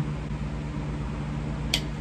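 Steady low hum with a single short, sharp click near the end: the plastic cap of a body-wash bottle snapping open.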